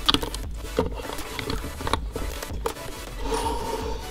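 Plastic LEGO bricks being handled and pressed onto a build: a scatter of small clicks and scraping rubs.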